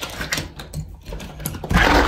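Light clicks and metallic rattles, then about a second and a half in a louder rush of noise as the door is pulled open.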